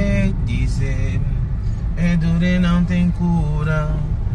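A voice singing in long held notes inside a car, over the cabin's steady low road rumble.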